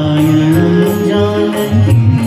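Live stage music played loud through a concert sound system and heard from among the audience: held, melodic notes over low bass and a steady percussion beat, in a chant-like devotional style.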